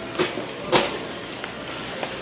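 Steady background noise of a busy store, with two brief knocks about a fifth of a second and three quarters of a second in.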